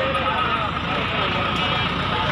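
Busy outdoor livestock-market ambience: many people talking at once with vehicle noise behind, and a steady high tone running underneath.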